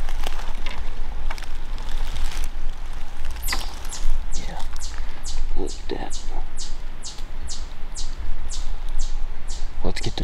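Footsteps and rustling through dry leaf litter with handling rumble on the camera. From about three and a half seconds in, a high, falling chirp repeats about three times a second.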